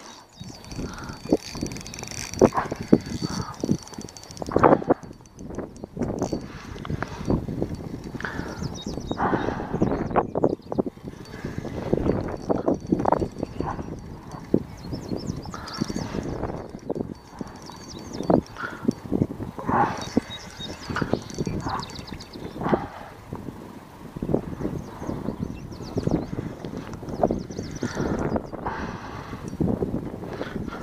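Rod and reel being worked while playing a hooked carp: irregular clicks and knocks from the reel and from handling.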